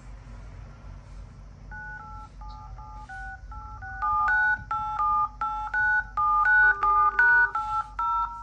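Smartphone in-call keypad tones: a quick run of short dual-tone DTMF beeps, one per digit pressed. They are faint at first and grow louder from about four seconds in.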